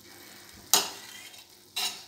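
A metal spoon stirring and scraping a thick, sticky coconut-and-sugar mixture in a kadai, with a quiet sizzle under it. Two sharp scrapes stand out, one less than a second in and a shorter one near the end.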